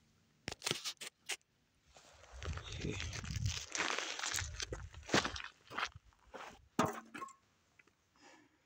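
Footsteps crunching and scuffing over dry dirt and dead twigs, coming closer. A few sharp clicks come in the first second and a half.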